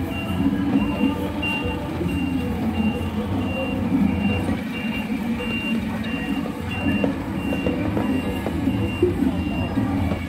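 A large vehicle's reversing alarm giving a steady run of short, high, evenly spaced beeps over the low rumble of an engine. The beeping stops near the end.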